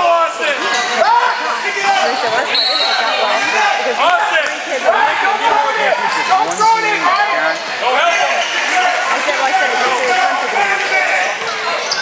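A basketball bouncing on the court during play, with short impacts scattered throughout, under many overlapping voices of spectators and players calling out.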